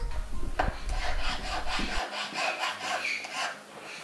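Hand file worked back and forth on a small workpiece held against a wooden bench peg, in quick, even rasping strokes about four a second that ease off near the end.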